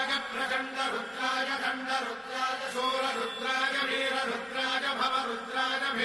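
Sanskrit mantras to Shiva chanted in a steady, rhythmic recitation on one held pitch.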